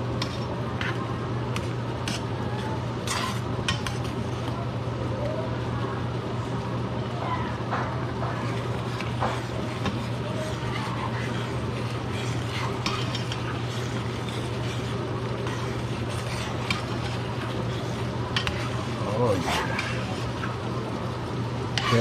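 Pasta in a cream sauce cooking in a stainless steel skillet, sizzling and bubbling while a slotted spoon stirs it, with scattered clicks and scrapes of the spoon against the pan. A steady low hum runs underneath.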